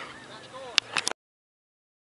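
A few short calls and sharp clicks, then the sound cuts off abruptly just over a second in, to dead silence.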